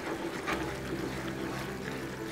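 Thickened tomato-chilli sauce simmering and bubbling in a frying pan as a wooden spatula stirs it, with small scraping and sloshing sounds over a steady low hum.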